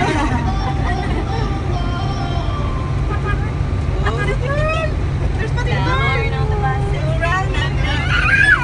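Amphibious water bus's engine droning steadily as it cruises on the water, heard from inside the cabin, with people's voices coming in over it about halfway through and again near the end.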